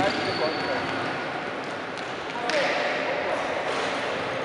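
Basketball game in a sports hall: players running and a ball bouncing on the court under a steady wash of voices echoing in the hall.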